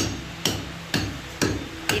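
Hammer blows on a house construction site, struck at a steady pace of about two a second, each a sharp knock.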